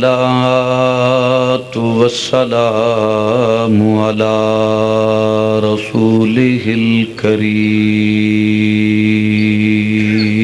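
A man's voice chanting Arabic in long, melodic drawn-out phrases over a microphone, the sung opening praise that begins a sermon. The last phrase ends on one long held note.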